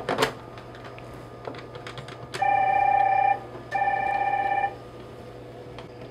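A desk phone handset is picked up with a clatter and a few keypad buttons click. Then the AP-IP90 IP phone rings electronically in two bursts of about a second each, answering the call. Near the end a single button click answers the call.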